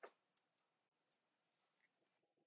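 Near silence: room tone with three faint, brief clicks in the first second or so.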